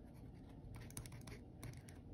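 Faint scratching of handwriting on paper, with scattered light ticks as the strokes are made.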